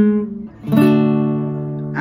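Classical guitar strumming a D major chord twice. The first strum rings at the start and is damped about half a second in. The second strum comes under a second in and rings out slowly.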